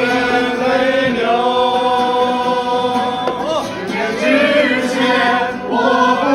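A group of men and women singing together as a choir, holding long sustained notes that move between pitches.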